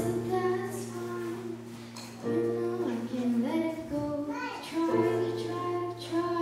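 A girl singing a slow melody into a microphone, accompanied by held chords on a Yamaha electronic keyboard that change about two and five seconds in.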